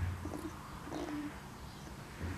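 Sleeping puppies making faint low whimpers and grunts, with one short, steady whimper about a second in and a soft low bump just at the start.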